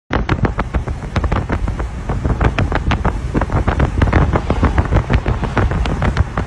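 Wind rushing in through an open car window while driving, buffeting the microphone in rapid, irregular gusts over a low rumble.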